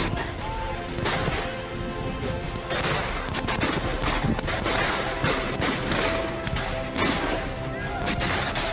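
Blank rifle fire from many rifles: irregular, overlapping shots, over background music.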